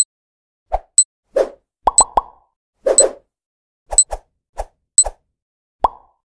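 Cartoon sound effects for an animated countdown: a quick string of soft plops and sharp clicks, about two a second, with a few short pitched pops, three in quick succession about two seconds in and one near the end.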